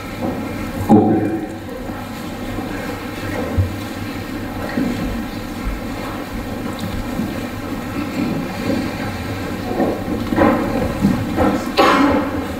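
Steady low rumble of room noise in a large hall, with a single knock about a second in and brief low voices near the end.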